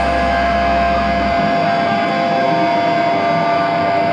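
Black metal band playing live, loud distorted electric guitars sustaining with a steady ringing tone held through; the deep bass drops out about a second and a half in.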